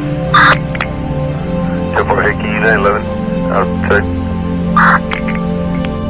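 Police-scanner radio traffic over steady ambient background music: a few clipped, garbled voice fragments on the radio, with two short bursts of static, about half a second in and near the end.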